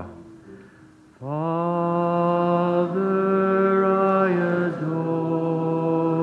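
A man singing a slow hymn in long, steady held notes, close to the microphone. The notes begin about a second in, after a brief lull, and step to a new pitch a few times.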